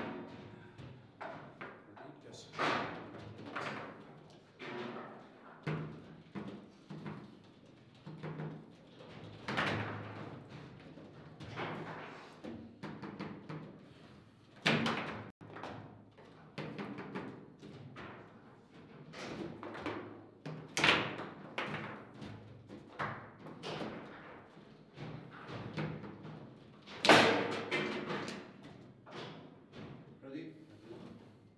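Table football in play: irregular sharp knocks and clacks of the ball being struck by the plastic figures and hitting the table walls, with rods thudding against their stops. The loudest knocks come about halfway through and near the end.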